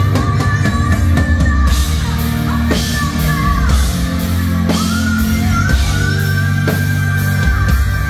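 Live melodic rock band playing, with drums, bass and keyboards under a woman singing long, sliding notes.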